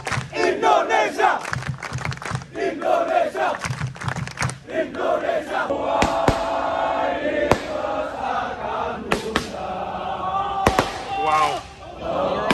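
Crowd of Indonesian football supporters chanting "Indonesia" together. From about halfway through it turns into a steadier crowd roar broken by several sharp bangs.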